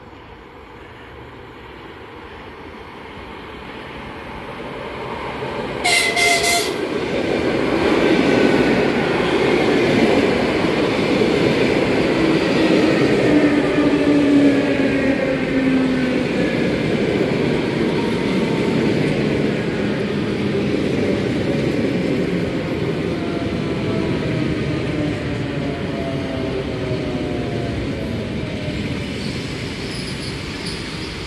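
EP2D electric multiple unit approaching and running past on the near-platform tracks, growing louder over the first several seconds. It gives a short horn blast about six seconds in. Then comes steady wheel and rail noise with a whine that slowly falls in pitch.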